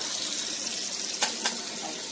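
Kitchen mixer tap running into a stainless steel sink, a steady splashing stream, with two short knocks a little over a second in.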